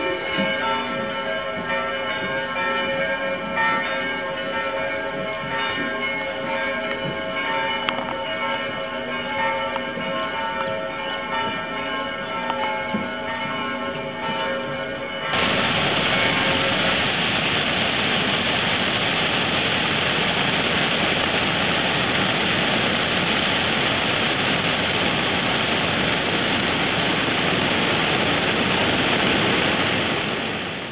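Several church bells ringing together, a dense overlapping mass of steady tones that swell and fade, for about the first half. Then the sound cuts abruptly to a steady rush of flowing river water.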